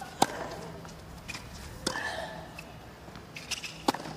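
Tennis rally on a hard court: three racket strikes on the ball about two seconds apart, with fainter ball bounces between them and a short vocal sound just after the second hit.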